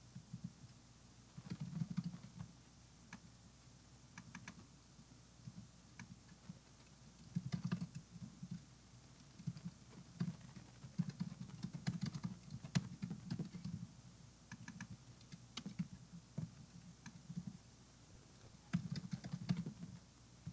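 Typing on a computer keyboard in irregular flurries of key clicks, faint and picked up by a microphone set down on the lectern, so each flurry carries dull knocks under the clicks.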